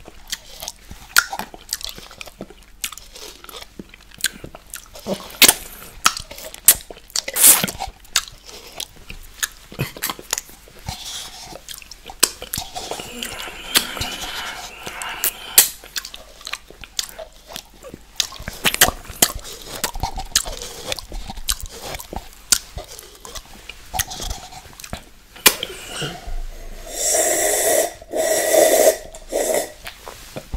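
Close-miked mouth sounds of a man drinking and licking milkshake from a plastic cup: many wet smacks and clicks of lips and tongue, with his tongue licking inside the cup. A louder, longer stretch of slurping comes near the end as he tips the cup up.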